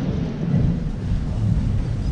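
Audience applauding in a large hall, heard as a steady, dull, low-pitched rumble of clapping.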